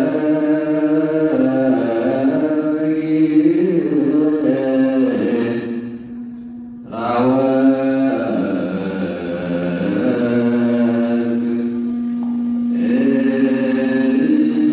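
Ethiopian Orthodox wereb, a liturgical hymn chanted by men's voices in long held notes. The chant eases into a brief lull about six seconds in, then picks up again.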